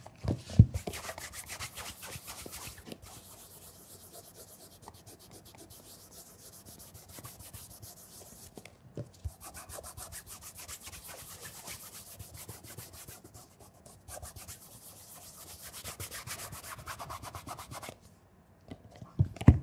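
Cotton cloth wrapped over the fingers rubbing a leather shoe in rapid strokes, wiping off old cream and wax with cleaner. The rubbing pauses briefly twice, and a single knock sounds about half a second in.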